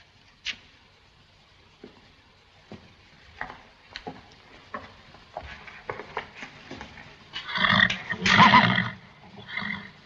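An agitated horse in its stable whinnying loudly about seven and a half seconds in, for about a second and a half, with a shorter cry just before the end. Before that there are only faint, scattered knocks, like footsteps.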